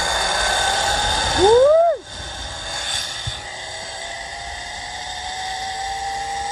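Zip-line trolley pulleys running along the steel cable: a whirring hiss with a faint whine that rises slowly in pitch as speed builds. A short swooping cry about a second and a half in, after which the sound drops in level.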